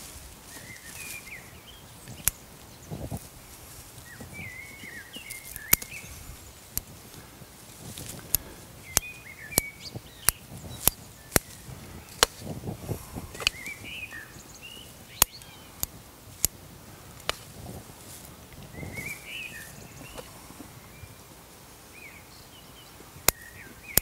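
Bonsai scissors snipping maple shoots: about twenty sharp clicks at irregular intervals, with soft rustling of leaves as the branches are handled. Birds chirp now and then in the background.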